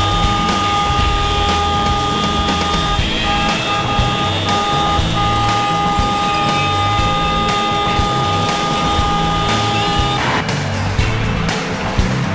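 Background music with a steady low beat, mixed with city traffic sound. A long, steady high tone runs under it and cuts off suddenly about ten seconds in.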